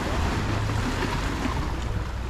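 Small waves washing and breaking against the boulders of a rock jetty, with wind rumbling on the microphone.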